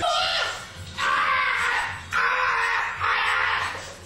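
A man's hoarse, breathy yells, four of them about a second each, as hot sauce burns his mouth.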